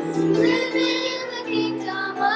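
Children's choir singing a hymn in long held notes, with piano accompaniment.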